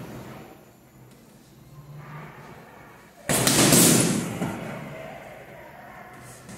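Boxing gloves striking a heavy punching bag: a loud impact about three seconds in that dies away over the next second or two.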